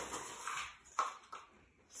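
Kitchen utensils handled at a mixing bowl as a plastic measuring cup is picked up: a soft rustle, then a sharp click about a second in and a fainter tap just after.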